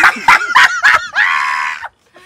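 Men laughing: several short sharp bursts of laughter in the first second, then one long, high-pitched shriek that cuts off suddenly.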